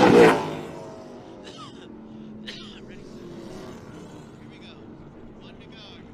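Race cars pass close by at caution pace right at the start, loud for under a second and falling in pitch as they go. A steady low drone of stock car engines circling under yellow follows, with faint voices over it.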